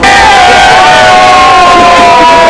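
A crowd of beer drinkers cheering and shouting loudly in a toast, mugs raised. Several voices hold one long shout that slowly falls in pitch.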